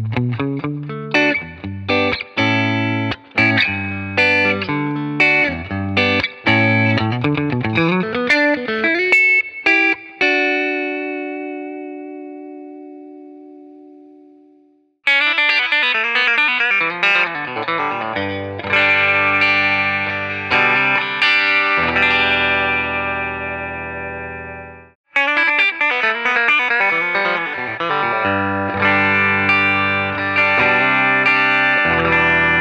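Clean electric guitar: Telecaster-style guitars on both pickups, through a Fender Deluxe Reverb combo with added reverb, play the same short phrase three times. Each take ends on a chord left to ring and fade, and a new take starts abruptly at about 15 and 25 seconds.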